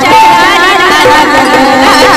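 A woman singing a Marathi devi geet (devotional song to the goddess) into a microphone, her long held notes wavering with vibrato, over instrumental accompaniment.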